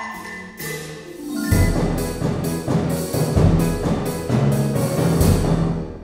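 Sample-library mock-up of an orchestral percussion section with harp: timpani, bass drum and low harp notes on the strong beats, tambourine and snare drum on the offbeats. It grows loud about a second and a half in and dies away near the end.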